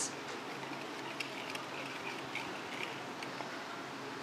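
Low, steady background room noise with a few faint light clicks and faint distant voices.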